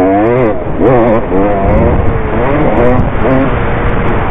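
Dirt bike engine revving up and down under the rider's throttle on a motocross track, its pitch rising and falling several times as it accelerates and shifts.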